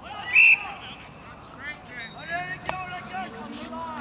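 A referee's whistle gives one short, loud blast about half a second in, followed by voices shouting across the pitch.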